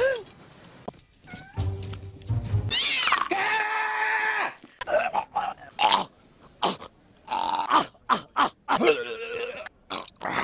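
A man imitating a cat with his voice: a long, drawn-out yowl about three seconds in, then a rapid string of short yowls and hissing bursts.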